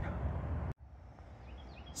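Outdoor ambience: a steady low rumble that cuts off abruptly under a second in, followed by a quieter background with faint bird chirps.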